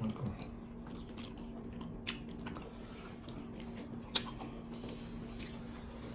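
Close-miked wet chewing and lip smacks of people eating fufu (amala) and egusi soup by hand, with scattered short clicks and one sharp smack about four seconds in. A brief low hum of the voice comes right at the start, and a faint steady low hum runs underneath.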